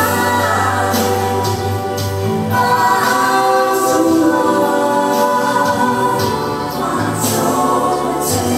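A Mizo gospel song sung live: voices singing a slow, held melody over a steady instrumental backing.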